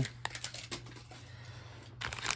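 Quiet room with a steady low hum and a few faint ticks and rustles as hands begin handling foil blind bags.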